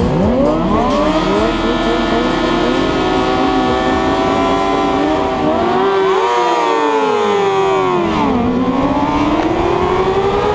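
Several sportbike engines at full throttle as they launch from a race start line. Their pitch climbs and drops through the gears, with one long falling note about seven seconds in before climbing again.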